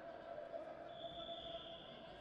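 Quiet wrestling-arena ambience with a steady hum, and about a second in a short, steady, high-pitched whistle blast of just under a second from the referee, restarting the bout.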